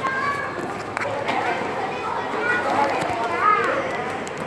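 Indistinct chatter of several people's voices in a busy public space, with one voice rising louder near the end.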